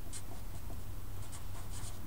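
Felt-tip marker writing on paper in several short scratchy strokes, over a steady low hum.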